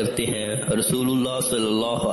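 A man's voice reading a hadith aloud in Urdu, with some drawn-out, held syllables.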